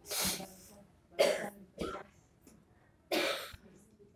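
A person coughing about four times in short, separate bursts, the loudest a little after a second in.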